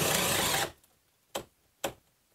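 Makita 18V brushless drill/driver boring a three-quarter-inch hole into a wooden 4x4 post under load, with motor hum and the bit chewing through wood. It stops about two-thirds of a second in. Two short sharp blips follow, about half a second apart.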